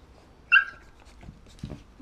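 A large dog yelping once, a short, sharp, high cry about half a second in, at a puppy's rough play-biting.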